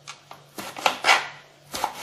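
Kitchen knife chopping bitter gourd strips into small pieces on a plastic cutting board: about five quick, unevenly spaced cuts.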